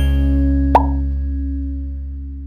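Closing chord of an intro jingle, held and slowly fading away, with one short pop sound effect about three quarters of a second in.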